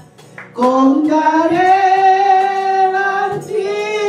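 A woman singing solo into a microphone: after a short breath at the start, a long held note that slides up in pitch and holds, then a new phrase near the end.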